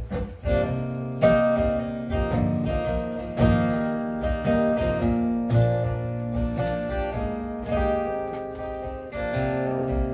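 Solo acoustic guitar strumming chords, the instrumental intro of a song before the vocal comes in.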